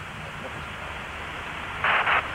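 Steady hiss of an open radio audio line between commentary calls, with a short burst of static near the end.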